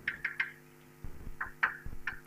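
Chalk writing on a blackboard: a quick series of short, sharp taps and strokes, in two groups, one at the start and one from about a second in.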